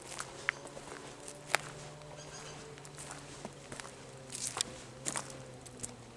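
Footsteps of a person and a dog walking on a forest path covered in dry leaf litter and twigs: irregular crackles and snaps, with a faint steady low hum underneath.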